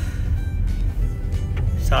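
A car's low road and engine rumble heard from inside the cabin while driving slowly, with music playing steadily over it.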